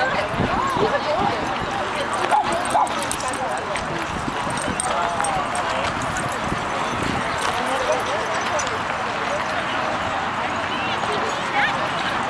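Pugs barking now and then over the steady chatter of a crowd of people.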